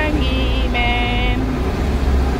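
A vehicle horn sounding twice in short blasts, the second one longer, over the steady low rumble of a bus engine heard from inside the bus.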